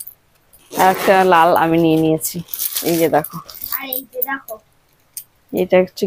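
Voices talking, with plastic wrapping crinkling as a garment is unpacked and unfolded.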